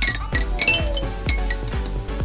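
Toy rainbow xylophone with coloured metal bars struck with a wooden mallet: a quick run of bright, ringing notes, several strikes a second.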